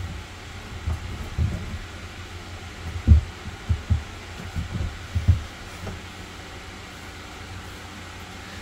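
Dull, low thumps and bumps from a plastic freshwater tank being pushed forward and pressed down by hand into its floor compartment. They are irregular, about eight in the first five seconds, the loudest about three seconds in, over a steady low hum.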